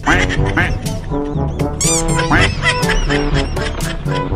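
White domestic ducks quacking, a call near the start and another about two seconds in, over steady background music.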